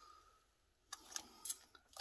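Near silence for about a second, then a few faint clicks and rustles: a plastic Sony Walkman cassette player and its headphone cord being handled.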